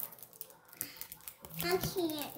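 Faint light clicks and rustles of Pokémon trading cards being handled and shuffled in the hands. A voice starts speaking near the end.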